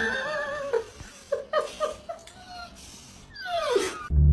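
Dog whining: a long wavering high whine, then a few short high whimpers, and a cry falling in pitch near the end.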